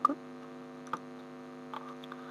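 Steady electrical hum picked up on the recording microphone, with a faint click about a second in.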